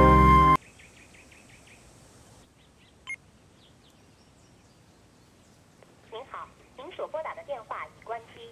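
Piano music cuts off half a second in. About three seconds in, a mobile phone gives a single short beep as a call is placed. From about six seconds, a recorded carrier announcement in Chinese plays over the phone line, the message that the number called is switched off.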